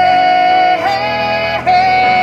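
Male singer belting long, high held notes over a keyboard in a live piano-rock song. The voice steps to a new held note about a second in and again near the end.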